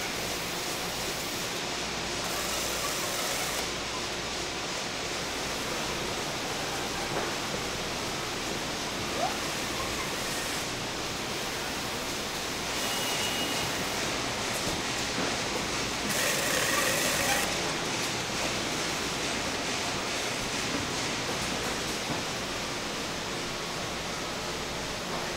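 Steady running noise of packing-line machinery and conveyors, with three brief louder, hissier surges spread through the stretch.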